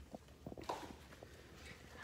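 Faint footsteps on a hard floor: a few soft, irregular steps and knocks over a low steady room hum.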